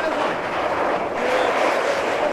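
Electric ice-racing cars driving past on a snowy track: a steady rush of tyre and motor noise.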